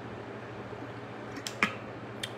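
A man drinking from a sport water bottle through its spout. It is mostly quiet over a low steady hum, then two or three sharp clicks come about one and a half seconds in.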